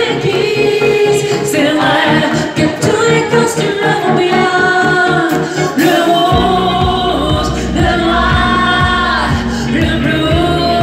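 Live pop song: a male lead vocal over keyboards and a steady beat. About six seconds in, a deep bass comes in under it.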